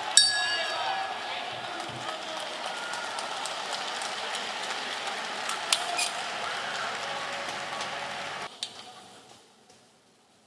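A round bell struck once, ringing and fading over about a second and a half: the signal ending a round of an MMA bout. Crowd noise runs under it and drops away sharply near the end.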